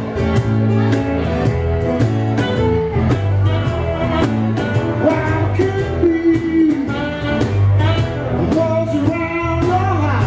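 A live blues band playing with a steady beat: electric and acoustic guitars, cajon and saxophone, with a sung melody on top.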